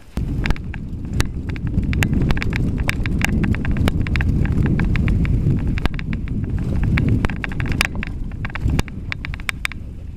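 Mountain bike riding fast over a rough dirt trail, heard through a handlebar-mounted camera: a loud, continuous low rumble of tyres and frame over the bumpy ground, with many sharp rattling clicks from the bike and mount.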